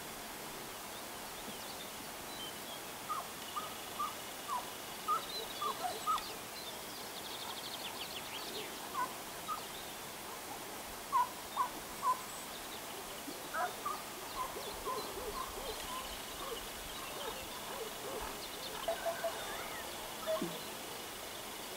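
Hare-hunting hounds giving tongue in short, spaced yelps in bursts, as they work the scent trail a hare has left. A bird trills briefly in a pause between bursts.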